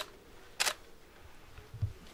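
Camera shutters clicking: two sharp shutter releases, one right at the start and one about two-thirds of a second later, then a soft low thump near the end.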